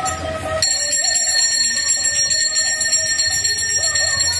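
A temple bell ringing continuously from about half a second in, a steady high metallic ringing, over music.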